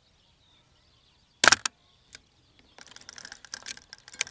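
Bronica ETR-Si medium format film camera taking a shot: a sharp double click of the mirror and leaf shutter at an eighth of a second about a second and a half in. Near the end comes a quick run of ratcheting clicks as the film is wound on to the next frame.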